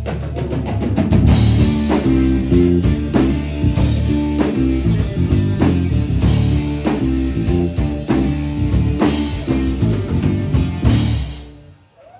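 Live band playing an instrumental passage: acoustic and electric guitars over a drum kit keeping a steady beat, the music dying away near the end.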